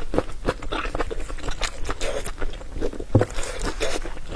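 Close-miked chewing of grilled sausage: an irregular run of short mouth clicks and smacks, the loudest a little after three seconds in.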